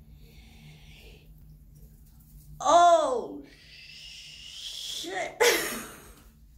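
A woman's wordless vocal cry about three seconds in, rising then falling in pitch, followed by a long breathy exhale and a sharp burst of breath near the end: sounds of dismay at having cut her hair too short.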